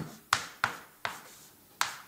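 Chalk striking and stroking a blackboard while writing: three sharp clicks within the first second, then a fourth near the end.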